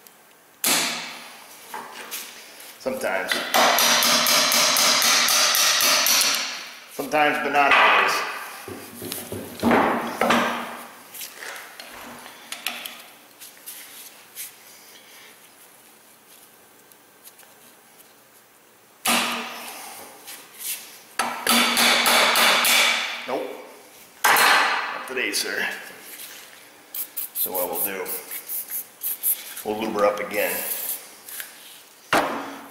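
Bursts of rapid metal-on-metal hammering, each lasting a few seconds, about three seconds in and again around twenty seconds in. There are lighter clinks of steel tools on metal in between and a run of sharper knocks near the end.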